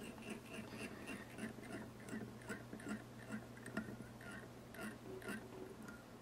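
Fly-tying thread being wrapped onto a small hook shank from a bobbin, each turn a faint soft rasp, about two or three a second in an even rhythm. A low steady hum runs underneath.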